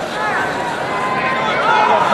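Spectators shouting and yelling, several raised voices over a steady crowd din.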